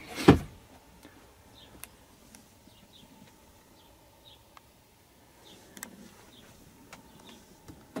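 A truck-cab sun visor flipped up against the headliner: one sharp knock about a third of a second in, then a quiet cab with a few faint ticks.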